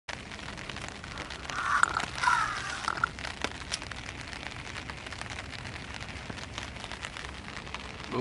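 Cold rain pattering steadily on a tarp, full of small scattered drip ticks. About two seconds in come a couple of sharper clicks as a disposable lighter is flicked.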